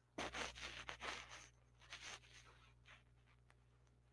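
A few faint scratchy, rustling noises picked up by a call microphone, bunched in the first second and a half with a few scattered ones after, over a steady low hum.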